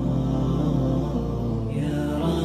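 Background music: a voice chanting a wavering melody over a steady low drone.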